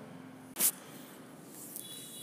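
A single short, sharp rustle a little over half a second in, as a handful of dry rice husk and coconut coir potting mix is grabbed and squeezed by hand; otherwise only faint background hiss.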